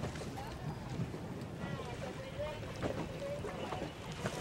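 Wind buffeting the microphone over the rush of water around a boat, with faint voices calling in the middle.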